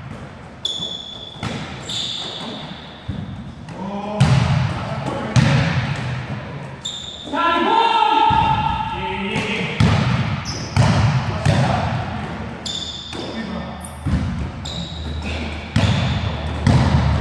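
A basketball bouncing again and again on an indoor gym court, the sharp hits echoing around the large hall, with sneakers squeaking on the floor now and then.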